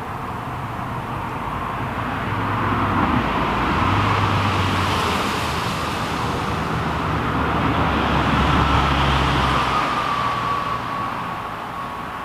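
Road vehicles passing, the sound swelling and fading twice, with a faint whine that drops slightly in pitch as the second one goes by.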